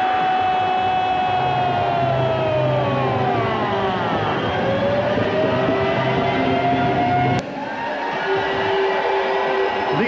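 Arena goal horn signalling a home-team goal: a loud horn of several tones at once, whose pitch sinks and then climbs back up. About seven and a half seconds in it breaks off with a click, and a lower steady tone carries on.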